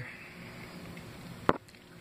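A single sharp click about one and a half seconds in, over a low steady background hiss.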